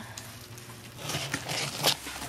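Cardboard shipping box being handled and opened by hand: a quiet first second, then rustling and scraping of the cardboard flaps, with a sharp crack just before the end.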